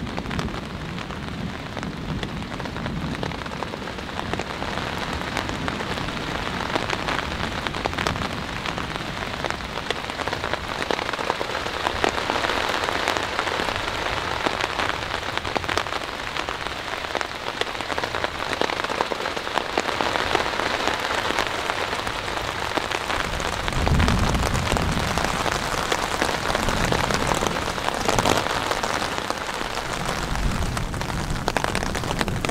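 Steady rain with many individual drops striking close by. A low rumble of distant thunder comes about three-quarters of the way through.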